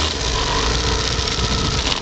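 Motorcycle engine running steadily at low revs as the bike moves off along a gravel road, a constant low drone with rushing noise over it.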